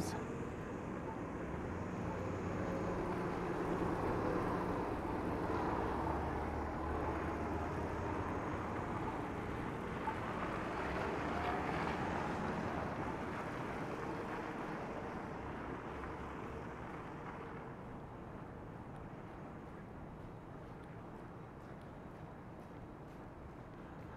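Motor traffic passing on a snow-covered street: engine hum and tyre noise swell over the first several seconds, then fade away slowly.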